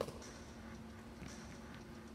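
A single sharp slap of a hand striking an inflated balloon at the very start, followed by faint scuffing footsteps on a wooden gym floor over a steady low hum.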